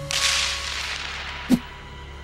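Sound effects from an animated video: a hissing rush of noise that fades over about a second, then a single sharp, whip-like crack about one and a half seconds in, over a low steady hum.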